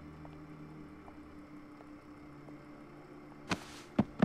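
Quiet room tone with a steady low electrical hum. A brief burst of noise comes near the end.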